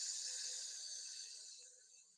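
A person's long, steady 'sss' hiss, breath pushed out slowly through the teeth as a breathing warm-up for singing, fading away over the last second.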